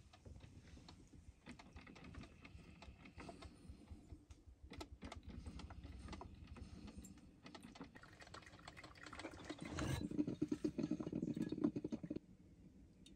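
Mr. Coffee drip coffee maker brewing under full heater load: soft crackling and sputtering that swells into a louder gurgle in the last couple of seconds.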